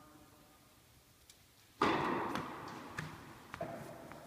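A sudden loud thud close to the microphone a little under two seconds in, followed by about a second of rustling that fades, then a few faint clicks.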